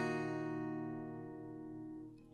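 Acoustic guitar letting a single strummed D minor chord ring, played with a capo on the first fret. The chord slowly fades away.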